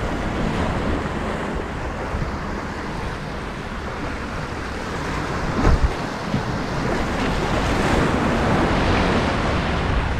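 Surf washing against jetty rocks, with wind buffeting the microphone. A single short thump a little past halfway through.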